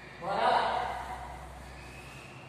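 A single short spoken vocal sound about a quarter of a second in, then quiet room tone.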